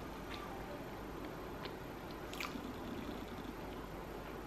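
A person chewing a mouthful of soft food with closed lips, with a few faint clicks, the clearest a little past halfway through, over a steady low room hum.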